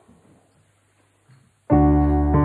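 A short hush, then about three-quarters of the way in a piano strikes a loud sustained chord that opens the song.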